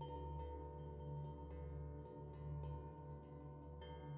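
Background music of soft, chiming bell-like notes struck every half second or so over a steady sustained drone.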